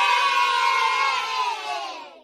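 A group of children cheering in one long held shout that starts to fade near the end.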